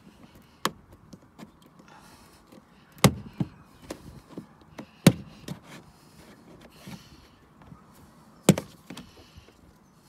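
Plastic trim removal tool prying and hands wiggling a car's plastic dashboard trim around the headlight switch, giving sharp plastic clicks and knocks as its clips are worked loose. The loudest snaps come about three, five and eight and a half seconds in.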